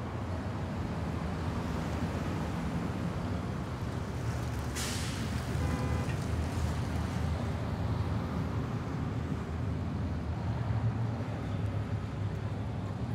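Steady low rumble of city street traffic. About five seconds in comes a short burst of hiss, trailed by a brief faint pitched tone.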